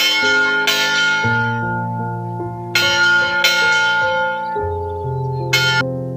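Hanging church bell struck five times, in pairs about two-thirds of a second apart, each stroke ringing on and fading. Soft background music with sustained low notes plays beneath.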